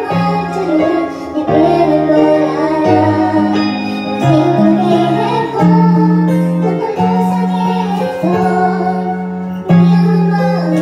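A woman singing over a music backing track, holding long notes over a steady bass line.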